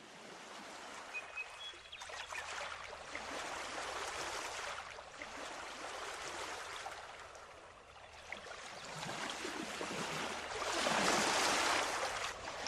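A rushing noise that swells and fades in slow surges, like surf, growing loudest near the end; there is no voice or melody in it.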